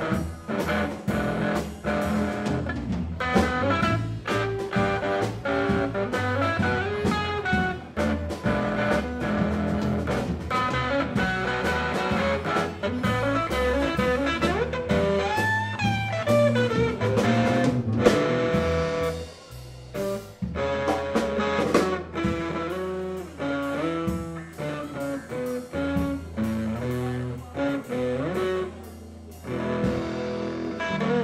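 Live blues-rock band jamming, led by a Gibson SG electric guitar played with a pick, with bass and drums; the guitar bends notes up and down. About two-thirds through the band drops away for a moment, then the playing continues more thinly.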